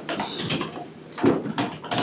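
A few knocks and rustles of medical equipment being handled.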